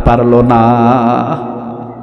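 A man's voice chanting in the sung, melodic style of a sermon, holding one long wavering note that fades away toward the end, picked up by a microphone.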